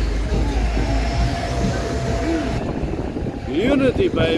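City street traffic: a steady low rumble of car engines and tyres. About two and a half seconds in, the background changes and a man's voice starts close to the microphone near the end.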